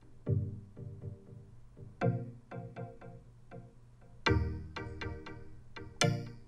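Synth pluck melody playing through a high-cut EQ filter that is being swept open: the notes start muffled with the highs cut away and grow brighter, reaching full brightness a little after four seconds in.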